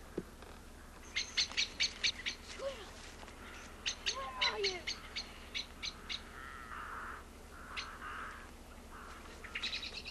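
Woodland birds singing: quick runs of short, high chirps a little after the start, again around the middle and once more at the end, with lower, hoarser bird calls in between.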